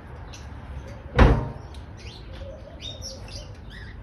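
Heavy steel lid of an offset barrel smoker's cooking chamber closing with a single loud bang about a second in, ringing briefly. Small birds chirp throughout.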